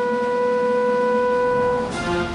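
A bugle holding one long, steady note that stops near the end.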